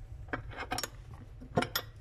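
Small cast-iron cleanout door of a brick stove's flue channel being handled: a few light metallic clicks and clinks from the door and its latch, the loudest pair about one and a half seconds in.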